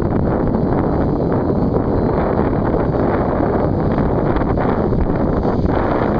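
Wind buffeting the microphone: a steady, loud rumbling rush with no clear pitch.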